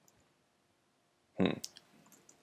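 Quiet room tone, then near the end a short hummed "hmm" and a few computer keyboard keystroke clicks.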